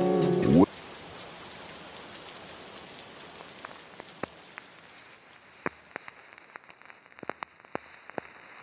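A lofi track ends about half a second in, its pitch sliding down as it stops. A steady rain sound effect is left behind, fading gradually, with sparse crackle clicks scattered through the second half.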